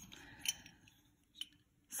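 Faint handling sounds from a small metal pin-back button being turned over in the fingers, with two short clicks about a second apart.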